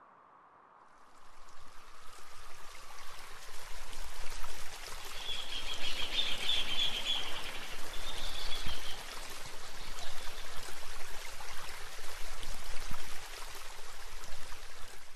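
A stream's water running steadily, starting about a second in, with a bird calling several times around the middle.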